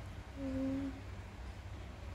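A woman hums one short, steady note, starting about half a second in and lasting about half a second.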